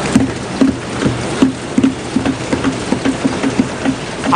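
A chamber full of members applauding by thumping their desks, with hand-clapping mixed in. The thumps come in a rhythm that quickens over the few seconds, over a dense crackle of claps.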